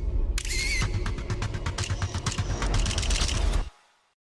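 Intro sound effects: a rapid run of sharp clicks over a deep bass rumble, with a brief high warbling tone near the start, all cutting off abruptly near the end.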